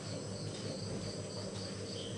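A repeated high-pitched chirp, about four pulses a second, over a steady low hum.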